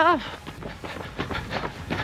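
Running footsteps on pavement at about three strides a second, with a runner's heavy breathing close to the microphone.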